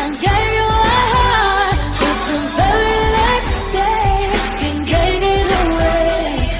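Pop song: a lead voice sings a melody over a band backing with drums.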